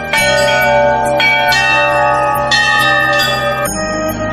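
A large hanging brass temple bell struck by hand three times, about a second apart, each strike ringing on over the next. The ringing cuts off just before the end.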